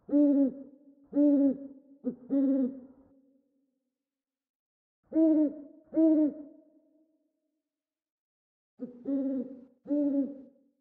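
An owl hooting in groups of short hoots: three in a row, then two, then two more near the end. Each hoot leaves a trailing echo.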